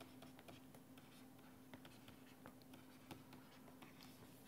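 Very faint taps and scratches of a stylus writing on a pen tablet, scattered irregularly, over a steady low electrical hum.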